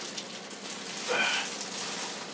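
Plastic grocery bags rustling and crinkling while groceries are handled and unpacked, a steady crackle with small clicks. A short voice sound comes about a second in.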